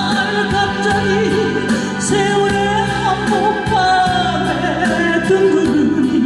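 A woman singing a slow ballad live into a handheld microphone, holding long notes over a backing track with a steady beat.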